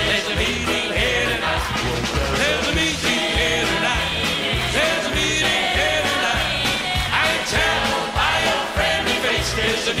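Live performance of an upbeat song: a vocal group singing over a band with acoustic guitar and a steady beat.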